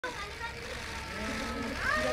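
People's voices calling out faintly over a steady low rumble of outdoor traffic, one voice rising in pitch near the end.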